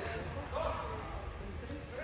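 Background noise of a large indoor sports hall: faint, distant voices over a steady low rumble.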